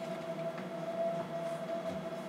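A steady hum with one constant pitch and fainter overtones beneath it, unchanging throughout, with a few faint ticks.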